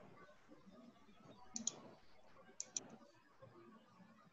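Near-silent room tone broken by two quick double clicks, about a second apart.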